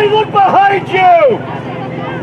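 High-pitched shouted calls across a soccer pitch, a few loud yells in the first second and a half, over a steady low hum.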